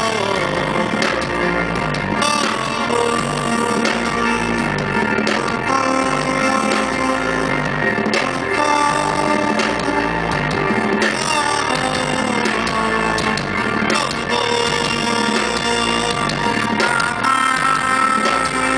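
A live band playing a loud, continuous instrumental passage with electric guitar and drums.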